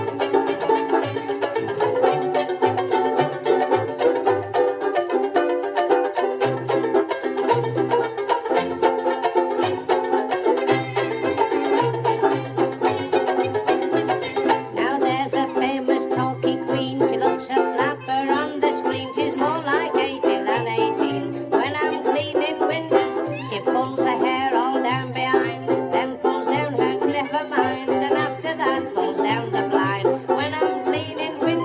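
Banjo ukulele strummed in a steady, even rhythm, with a bass line underneath.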